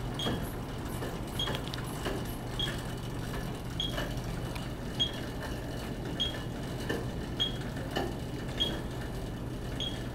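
Short high beeps repeating steadily about every 1.2 seconds, about fifty a minute, the pacing beat for pedalling a cycle ergometer. Under them run a steady low hum and a few faint clicks.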